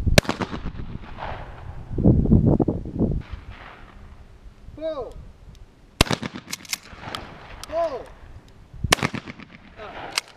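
Shotgun shots at a clay-target range, each a single sharp crack: one right at the start, then two more near the end about three seconds apart. A short shouted call comes about a second before each of the later two shots.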